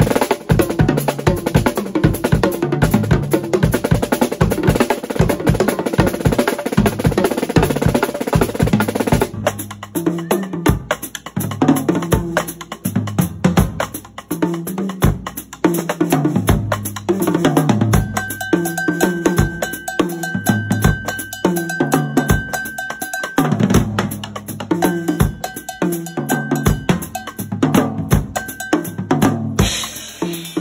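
Tama Star Bubinga drum kit played in a fast, busy groove with cymbals. About nine seconds in, the sound changes abruptly to a sparser, steadier beat, with a thin held tone over it in the second half.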